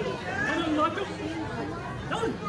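Indistinct voices talking, with a background murmur of chatter.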